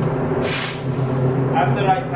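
A short hiss of compressed air from an automotive paint spray gun, about half a second long, starting about half a second in, over a steady low hum.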